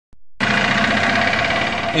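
A vehicle engine running steadily, cutting in abruptly a fraction of a second in.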